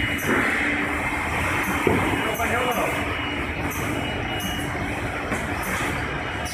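Case-packing line machinery running: powered roller conveyors carrying cardboard cartons with a steady rattling noise over a constant machine hum. A single knock comes about two seconds in.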